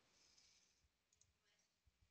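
Near silence: faint room tone, with a couple of very faint clicks about a second in.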